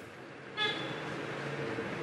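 Street traffic: a motor vehicle engine running steadily, with a short horn toot about half a second in.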